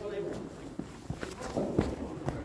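A short burst of voice at the start, then footsteps and light knocks on the artificial turf of an indoor cricket net as a bowler follows through.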